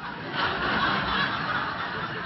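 A room full of people laughing together, starting suddenly, swelling over the first second and then slowly easing off.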